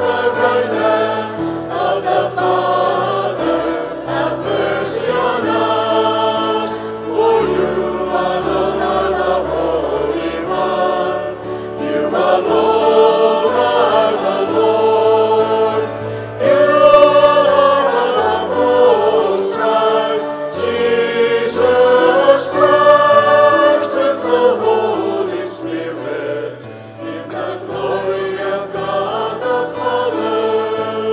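A choir singing a sung part of the Mass with accompaniment: long held vocal lines over low sustained bass notes that change in steps.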